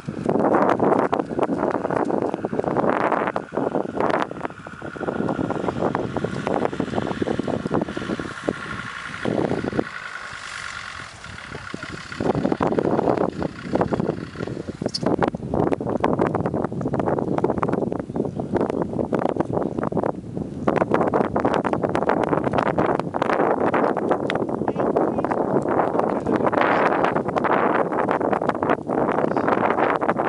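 Wind buffeting the microphone, mixed with the running of a vehicle. The noise drops to a quieter lull about ten seconds in and picks up again about two seconds later.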